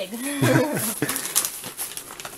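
A person's drawn-out voiced sound, its pitch bending up and down for most of a second, followed by laughter.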